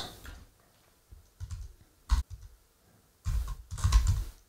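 Computer keyboard typing, single keystrokes at an uneven pace that come faster in the last second.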